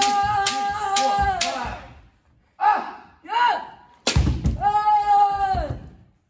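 Bamboo shinai strikes on a kendo helmet in quick succession, about two hits a second, under a long, held kiai shout during kirikaeshi striking practice; the strikes stop about a second and a half in. Two short shouts follow, then one more sharp strike about four seconds in and another long, held kiai.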